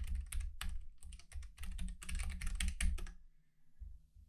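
Typing on a computer keyboard: a quick run of keystrokes for about three seconds, then it stops.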